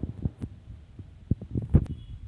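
A handful of dull knocks and a few sharper clicks, uneven in spacing, the loudest near the end: a spatula knocking against a steel cooking pot.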